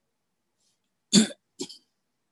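A person coughing twice over a video call: a louder cough a little past a second in, then a softer one right after.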